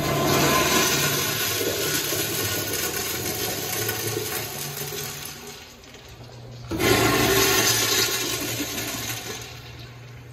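Two 1989 Kohler Dexter urinals flushing one after the other. Each flush starts suddenly with a loud rush of water that tapers away. The second begins about seven seconds in.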